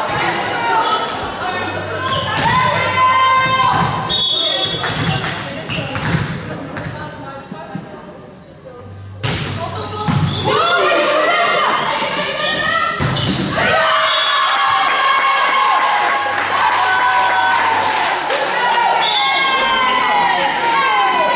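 Indoor volleyball play in an echoing sports hall: thuds of the ball being hit, with players calling and shouting throughout. Just after the middle there is a sudden loud outburst of several voices at once that carries on to the end.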